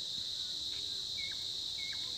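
A steady, unbroken high-pitched insect drone, like a chorus of crickets or cicadas, with two short high chirps, one about a second in and one near the end.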